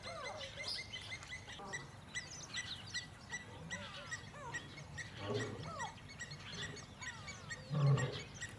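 Lion growling: two low growls, one about five seconds in and a louder one near the end. Birds chirp throughout, with a high note repeating about twice a second.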